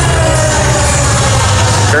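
Arena goal siren winding down, its pitch falling and fading out about half a second in, over steady arena background noise.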